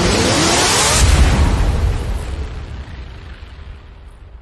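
Cinematic logo-reveal sound effect: a rising whoosh that peaks about a second in with a deep boom, then fades away.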